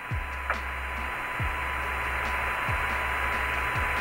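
Hiss of the open Apollo air-to-ground radio channel with no one talking, slowly growing louder, with a steady faint tone and a low hum under it. Four short downward chirps cut through it about a second and a half apart.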